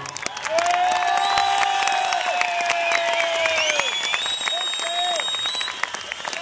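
Audience applauding, with a long drawn-out shout and high, shrill whistles over the clapping, beginning as the fiddle-and-accordion folk band's tune ends.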